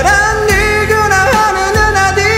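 A man singing a Korean pop ballad over a karaoke backing track, drawing out long notes with vibrato.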